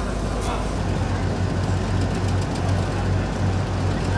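Crowd voices in the street over the steady low hum of an idling vehicle engine, with a few sharp clicks.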